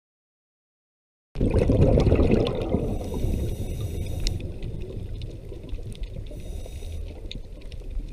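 Underwater recording of scuba divers' regulators: a rush of exhaled air bubbles starts about a second in and is loudest at first, then eases into a steady low bubbling, with scattered faint crackling clicks.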